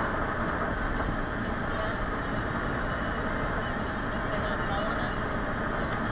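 Steady road and engine noise inside a car's cabin at highway speed, an even rumble of tyres on pavement with no blast or other sudden sound.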